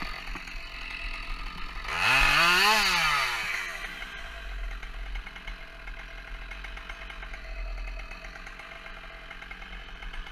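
Two-stroke chainsaw running at idle, given one quick blip of the throttle about two seconds in: the pitch climbs sharply, then falls back to idle within about two seconds.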